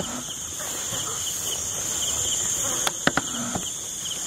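Insects chirping in a steady, high, continuous night chorus, with a couple of sharp clicks about three seconds in.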